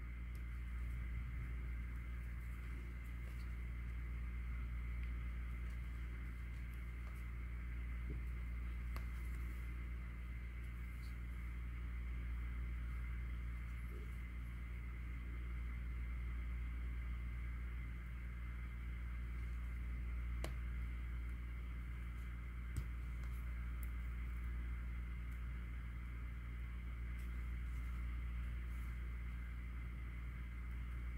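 Steady low electrical hum of room tone with a faint steady high tone above it, and a few faint ticks.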